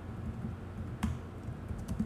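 A few scattered keystrokes on a computer keyboard: one about a second in and a quick few near the end, over a low steady hum.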